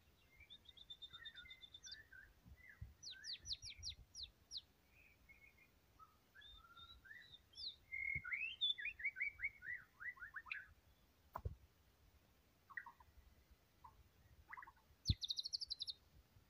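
Caged white-rumped shama singing a varied song of whistled phrases, trills and fast runs of notes, with short pauses between phrases. Two sharp knocks break in, one about eleven seconds in and one near the end with a burst of high rapid notes.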